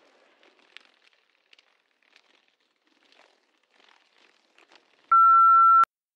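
Near silence, then about five seconds in a single steady high-pitched answering-machine beep lasting under a second and ending with a click: the tone that marks the start of the next voicemail recording.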